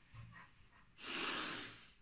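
A woman's breathy sigh: a long exhale about a second long, starting halfway through and fading out.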